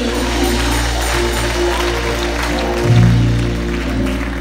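Live gospel church music with no singing: sustained low keyboard and bass chords under light shaking percussion. A louder, deeper bass note comes in about three seconds in.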